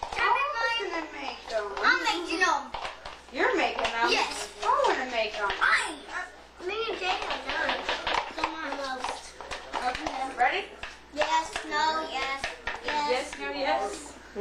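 Children's voices chattering, with scattered light clicks and taps throughout.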